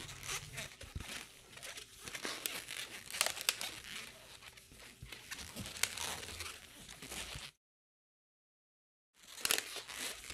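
Inflated latex modelling balloon being twisted and handled: faint rubbery rubbing and squeaks, with a few sharper squeaks. The sound drops to dead silence for about two seconds after the middle, then the handling noise resumes.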